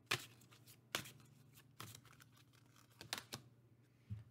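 Oracle cards being handled and shuffled, giving about five short, sharp snaps of card stock spread across the span, over a faint steady low hum.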